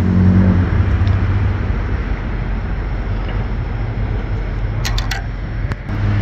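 Steady road traffic noise, with two short clicks near the end.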